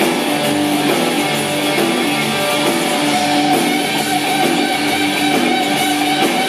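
Live rock band playing: electric guitars, bass guitar and drums, with steady, sustained guitar notes over the beat.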